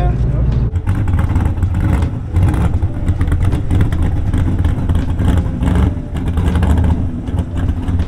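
Classic first-generation Ford Mustang coupe's engine running with an uneven, chopping idle as the car rolls slowly in.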